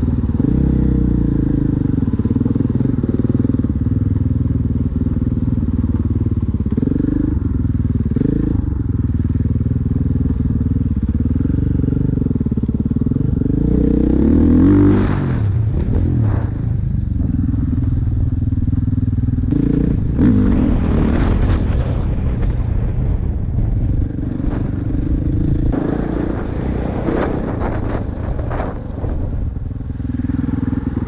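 Dirt bike engine heard from on board while the bike is ridden over a muddy track, the revs rising and falling with the throttle. It is opened up hard about halfway through and again a few seconds later.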